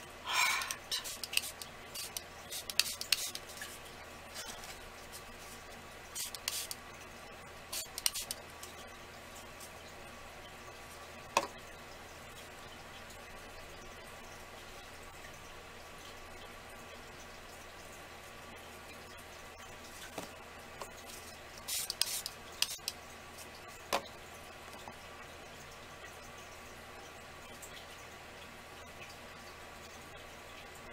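Scattered clicks, taps and short hissy bursts from small craft supplies being handled on a work table, in a few clusters with quiet gaps, over a steady low hum.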